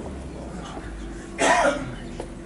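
A single short cough from a person in the crowd, about a second and a half in, against otherwise quiet surroundings with a faint low rumble.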